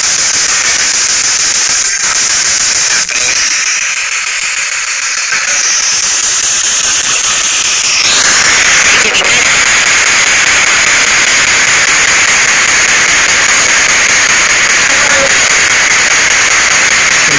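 Ghost box (spirit box) radio sweeping through stations: a loud, steady static hiss that grows louder about halfway through.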